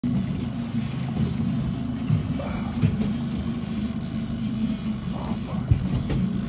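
Outboard boat motor running steadily with a low, even hum, with a few short knocks on top.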